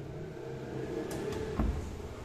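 Modular kitchen pull-out drawer holding a stainless-steel wire basket, sliding on its runners with a couple of light clicks, then shutting with a dull thump about one and a half seconds in.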